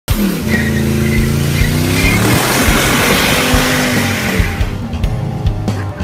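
A car doing a burnout: the engine is held at high revs with its pitch swinging up and down while the rear tyre squeals in a continuous screech. About four and a half seconds in, the tyre noise gives way to rock music with guitar.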